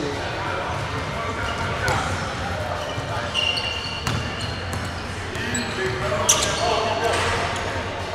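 A basketball bouncing on a hardwood gym floor, a few separate knocks, with short high sneaker squeaks and chatter echoing in a large hall.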